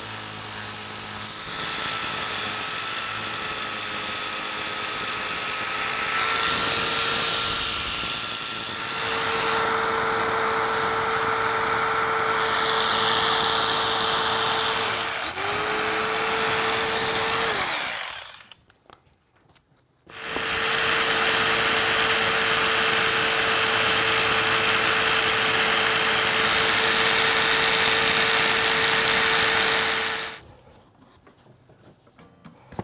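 Corded electric foam-cutting saw running steadily as it slices through thick foam. It stops for about two seconds a little past the middle, then runs again and cuts off at the end.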